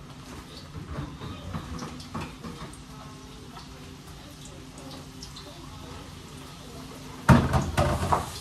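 Quiet kitchen background with faint knocks and clatter, then, about seven seconds in, a sudden loud crinkling of a plastic snack bag handled right next to the microphone.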